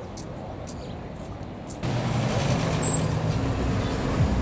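A motor vehicle's engine running close by, over steady outdoor noise; it gets louder about halfway through and stays steady.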